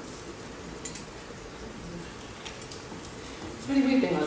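Low hum and hush of a hall between songs, with a few faint clicks; a voice starts up near the end.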